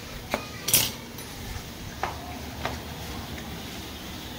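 A few sharp metallic clinks of hand tools, the loudest a brief clatter just under a second in.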